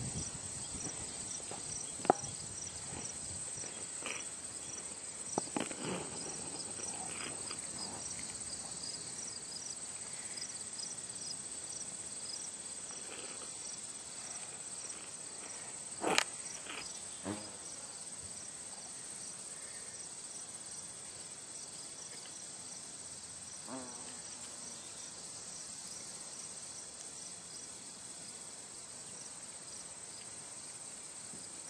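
Steady insect chirping: a short high chirp repeating a few times a second over a continuous high trill. A few sharp clicks come through, the loudest about halfway through.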